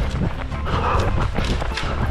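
An orienteer's running footfalls through forest terrain, a steady rhythm of steps heard close on a head-mounted camera's microphone, over a low rumble.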